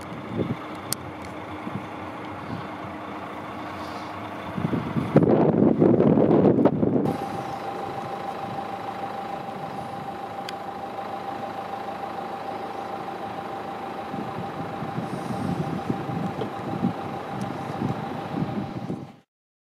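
A motor vehicle engine running steadily, with a louder rumbling surge about five seconds in. After that a steady whining tone holds to the end.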